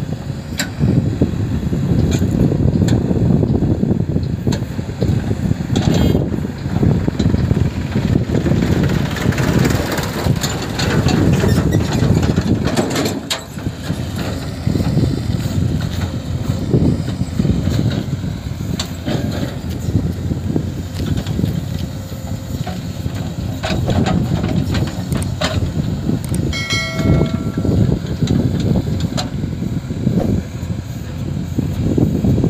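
JCB 3DX backhoe loader's diesel engine running steadily under load as the backhoe arm digs soil. A short pitched tone sounds briefly near the end.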